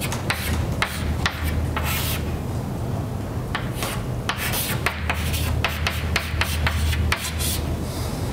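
Chalk writing on a blackboard: a run of quick scratching strokes and taps, over a steady low hum.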